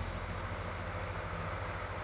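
A steady low hum with a faint hiss behind it, running evenly without change.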